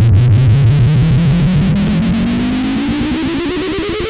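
A distorted electronic tone sweeping steadily upward in pitch, pulsing ever faster as it rises and slowly getting quieter.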